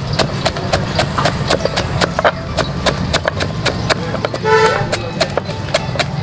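Kitchen knife chopping spring onions on a wooden chopping board: rapid, even chops, about four a second. A brief pitched tone, like a horn toot, sounds about four and a half seconds in.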